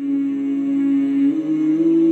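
Vocal music starts abruptly: a voice hums long held notes, the pitch stepping up once a little after a second in.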